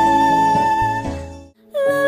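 A woman's voice holding a high sung note over soft backing music, fading out about a second and a half in. After a brief break, another woman's voice comes in on a lower held note.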